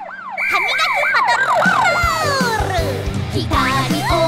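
Cartoon siren sound effect: a fast wailing rise-and-fall repeated several times, then one long falling glide. Children's song intro music with a steady beat comes in about two seconds in.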